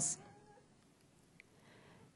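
Near silence: faint room tone, with the end of a spoken word at the very start and a faint, brief wavering tone just after it.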